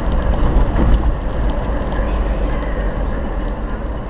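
Noise inside a moving car: a steady deep rumble of road and engine under a broad hiss.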